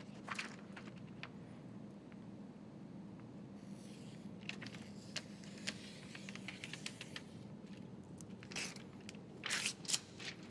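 Faint scraping, crinkling and light ticks of window tint film being handled and trimmed with a blade along the glass edge, over a steady low hum. A few louder rustles come near the end.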